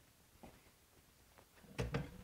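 Quiet room tone with a brief soft thump near the end.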